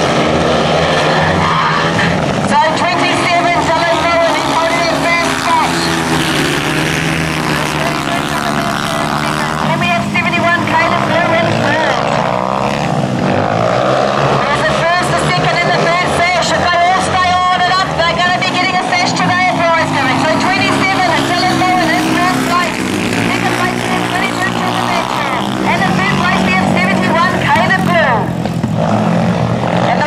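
Several speedway solo motorcycles' single-cylinder engines racing, their pitch rising and falling over and over as the riders open and close the throttle around the track.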